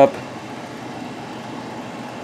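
Steady low background hiss of room noise, with the end of a spoken word at the very start.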